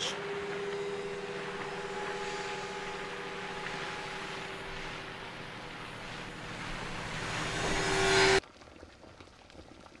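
A steady, engine-like rushing drone with a held hum, swelling louder over its last few seconds and then cutting off abruptly about eight seconds in, followed by quiet room tone.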